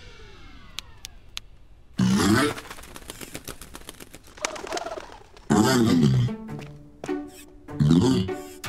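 Cartoon soundtrack with wordless character vocal sounds: a few sharp clicks about a second in, then three short bursts of babble-like sounds whose pitch slides up and down, over light background music.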